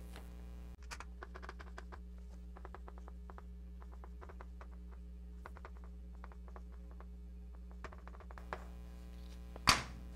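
Chalk writing on a chalkboard: a run of faint, irregular taps and clicks as letters are chalked, with one louder click near the end, over a steady low mains hum.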